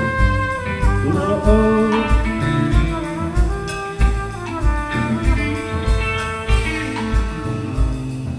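A trumpet plays a melodic instrumental passage over a live band, with a steady kick-drum beat underneath and no singing.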